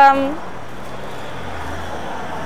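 Road traffic: a van and a car driving past on a city street, a steady low engine and tyre noise that grows a little deeper near the end.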